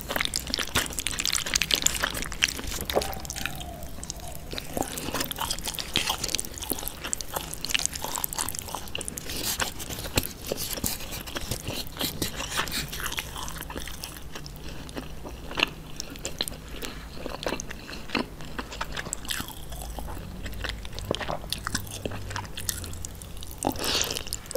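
Close-miked chewing and biting of thick jajangmyeon noodles in black bean sauce: a steady run of small wet clicks and crackles from the mouth.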